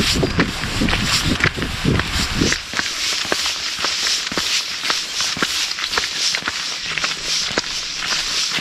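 Footsteps on a wet asphalt road, walking pace at about two steps a second, heard most clearly from a little before the middle onward, over a steady hiss.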